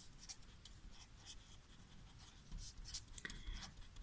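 Felt-tip marker writing on paper: faint, quick, irregular scratching strokes as a line of words is written out.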